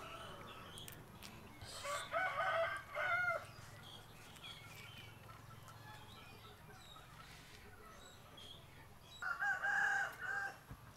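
A rooster crowing twice: one call about two seconds in and another near the end.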